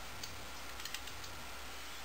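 A few faint computer keyboard key clicks as a BIOS setting is changed, over a steady low hum.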